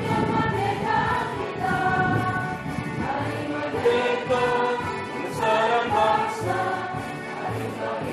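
A choir singing a song in held, melodic notes with musical accompaniment.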